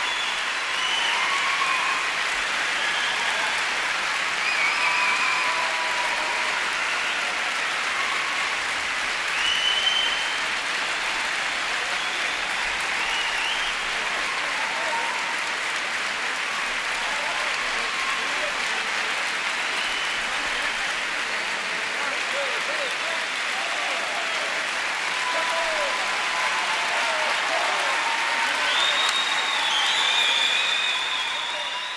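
Concert-hall audience applauding steadily, with scattered voices calling out over the clapping.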